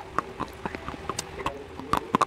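Close-miked crunching of dry baked clay being bitten and chewed: a quick, irregular run of sharp, crisp crunches, several a second.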